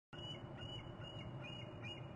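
A bird calling in a series of short, high chirping notes, about three a second, over a steady low background rumble.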